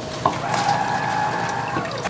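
Electric lever-arm citrus juicer running as a lemon half is pressed down onto its reamer. A click about a quarter-second in starts a steady motor hum, which stops shortly before the end.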